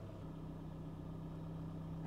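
Faint steady low hum of a Toyota Prius heard from inside the cabin while the car is switched on and standing still.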